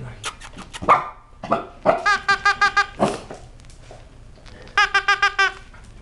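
A noise-making plush toy gives two quick runs of high yaps, each run about seven identical yaps at about eight a second, a few seconds apart. A few light clicks come in the first second.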